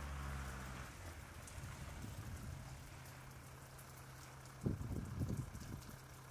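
Faint outdoor ambience: a low hum that fades out about a second in, over a steady low rumble with faint ticking. A short clatter of knocks comes a little before the end and is the loudest thing heard.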